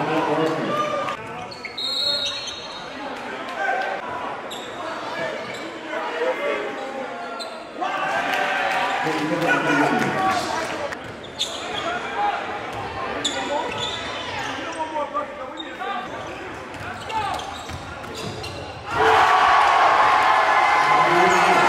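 Basketball game sounds echoing in a gym: a ball bouncing on the hardwood court, with indistinct voices of players and spectators throughout.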